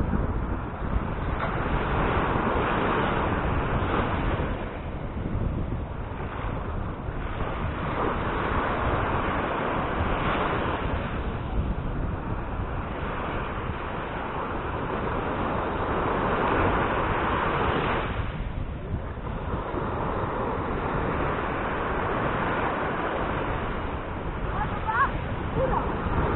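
Surf washing onto a sandy beach, a steady rushing noise that swells and fades every several seconds. Wind rumbles on the microphone underneath.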